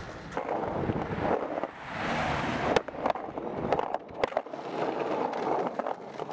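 Skateboard wheels rolling on concrete, with a few sharp clacks of the board.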